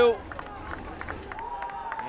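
Soccer match ambience from the pitch-side microphones: a low, even background with scattered short knocks and claps, and one long held call starting past the middle.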